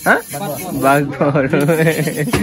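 Speech only: a man's voice asking a price and talking on, with no other sound standing out.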